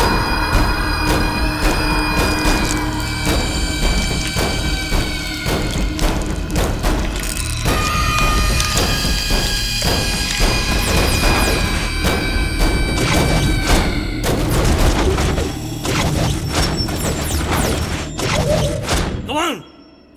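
Dramatic film background score: sustained synth tones with heavy booming percussion hits. It cuts off abruptly near the end.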